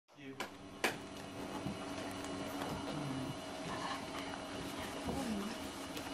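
Faint, indistinct voices of people talking in a small room over a steady hum, with two sharp clicks in the first second.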